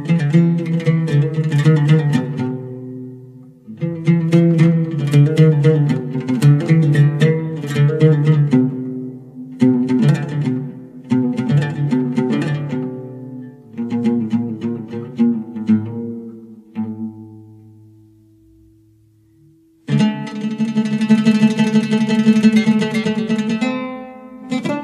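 Persian classical string instrument playing a melody in short phrases of ringing notes. A low note is left ringing and fades away, then a fast, dense tremolo begins about four seconds before the end.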